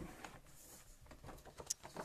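Faint paper handling: a sheet of white cardstock being scored down the middle on a scoring board and lifted to fold, with a few light clicks and a sharp tick near the end.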